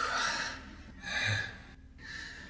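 A man's heavy, audible breathing: a loud breath at the start and a second one about a second in.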